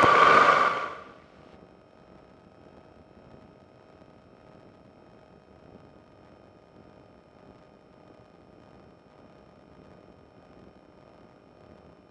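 Microlight engine and wind noise heard through the headset/intercom audio feed, cutting off about a second in as the microphone gate closes. What remains is a faint steady electrical whine and hiss.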